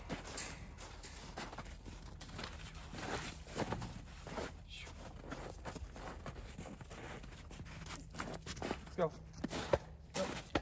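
Footsteps on snow-covered corral ground, irregular steps and scuffs, with a short pitched call near the end.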